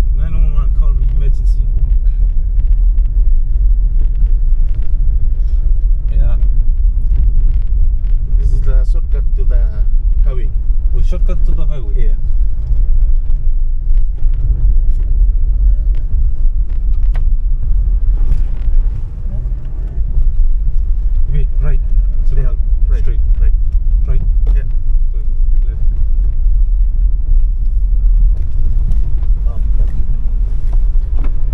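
Steady low rumble of a car's engine and tyres, heard from inside the cabin while driving on a rough rural road, with scattered short knocks.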